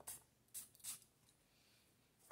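Faint handling of a small cardboard perfume box: three soft, short rustles in the first second, then near silence.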